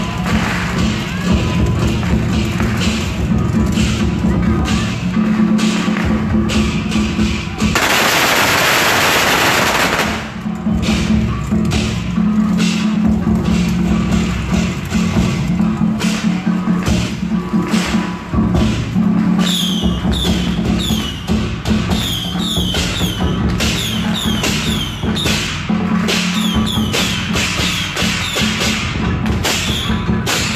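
Taiwanese temple-procession percussion: large barrel drums beaten in a steady driving rhythm with crashing hand cymbals, the cymbals ringing and shimmering through the second half. About eight seconds in, a loud burst of noise cuts over it for about two seconds.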